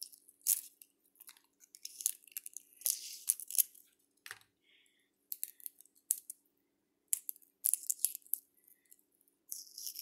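Shell being cracked and picked off a hard-boiled egg by hand: irregular small crackles and scratches in clusters, with short pauses between.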